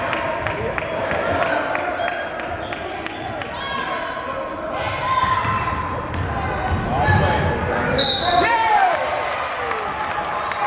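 Basketball dribbled on a hardwood gym floor, repeated bounces echoing in a large hall, with a few sneaker squeaks near the end and spectators' voices throughout.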